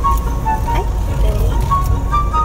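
Steady low road and engine rumble of a moving car heard from inside the cabin, with a simple tune of short, high, evenly paced notes playing over it.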